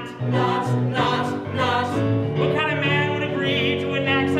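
Live musical-theatre number: voices singing over keyboard accompaniment.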